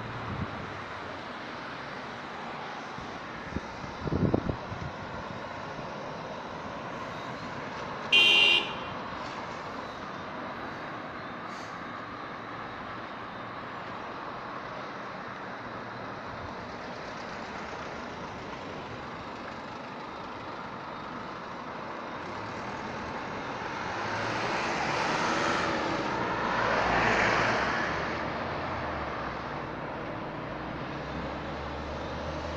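Road traffic going round a roundabout over a steady hiss. A car horn gives one short toot about eight seconds in. Near the end a vehicle passes close, its engine and tyre noise swelling and then fading.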